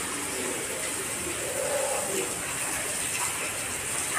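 Tap water running in a thin stream and splashing into a steel pot as fish is washed by hand, a steady splashing with no break.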